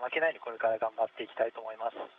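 Speech only: a man talking in Japanese, with the thin sound of a radio link.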